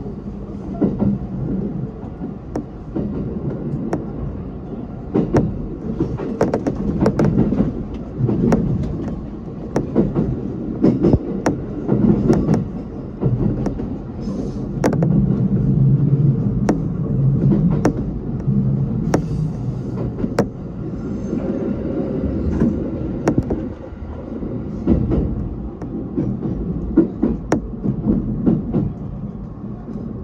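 E127 series electric train running along the line, heard from inside the front of the car: a continuous low running rumble that swells and eases, with many sharp clicks from the wheels going over the track.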